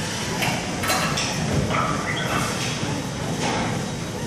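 Steady room noise of a large hall with several scattered knocks and thuds in the first second or so, and a faint voice-like sound about halfway.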